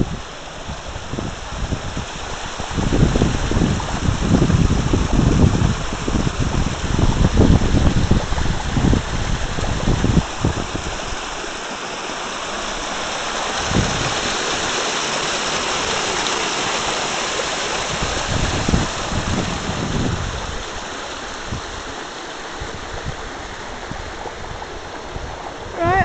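A stream of water rushing over rocks and under a shelf of ice, a steady hiss that grows brighter and louder about halfway through. Low rumbling buffets run under it for several seconds near the start.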